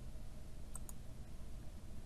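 Two quick computer mouse clicks a fraction of a second apart, about a second in, over faint room hum.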